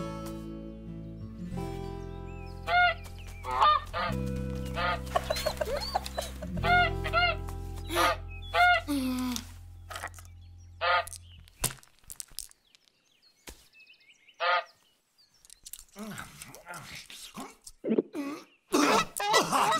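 A white domestic goose honking in short single calls, about ten of them, most bunched in the first eleven seconds with one more later. A soft music bed runs under the honks and stops about two-thirds of the way through.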